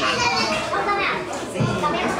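Children and adults talking and calling out over one another in a lively crowd.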